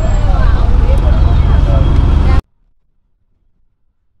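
Auto-rickshaw engine running with a rapid, even pulse, heard loud from inside the open cabin. It cuts off abruptly about two and a half seconds in, giving way to near silence.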